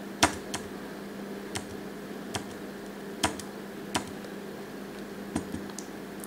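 About eight scattered, irregularly spaced sharp clicks of a computer keyboard or input device as a PowerPoint document is worked on, over a steady low hum.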